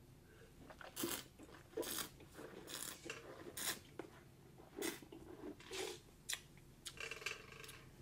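A wine taster slurping and swishing a mouthful of red wine, drawing air through it in a series of about eight short, hissy sucks.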